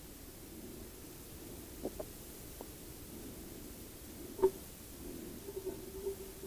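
Faint handling noise from a plate being fitted into a PVC pipe cell: a few light clicks about two seconds in and a single sharper tap about four and a half seconds in, over a low steady room hiss.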